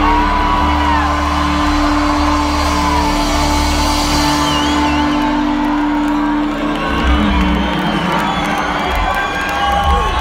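Live reggae band sustaining a long held note over bass as a song closes, with the crowd cheering and whooping. The held note drops out about two-thirds of the way in, leaving mostly crowd cheers.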